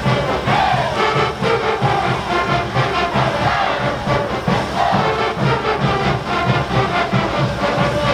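Live brass band with bass drums playing caporales music at a steady, driving beat, with voices shouting over the band.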